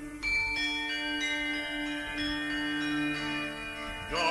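Medieval ensemble music: small tuned bells struck one note after another, each ringing on, over a steady held low note.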